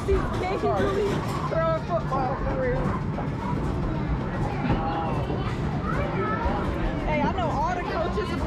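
Busy arcade din: many voices chattering over the steady noise of game machines.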